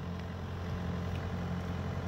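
Engine of a compact horizontal directional drilling rig running steadily, a low even hum.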